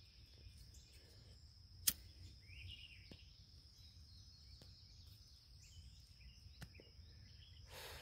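Quiet outdoor garden ambience: a faint, steady high insect trill with a few faint bird chirps, broken by one sharp click about two seconds in.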